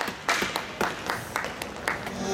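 Hands clapping close by, sharp single claps at about four a second, slightly uneven.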